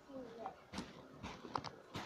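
A few sharp clicks and knocks from toys being handled and moved about, with a faint vocal sound at the start.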